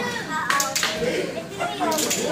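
Three or four sharp hand claps about half a second in, over people talking and children's voices.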